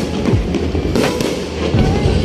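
Aerial fireworks bursting overhead: a few sharp bangs about a second apart, with loud music playing alongside.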